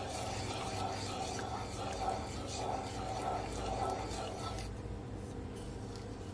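Wooden spoon stirring and scraping through a thin sauce in a nonstick frying pan, a steady rubbing sound over a faint low hum.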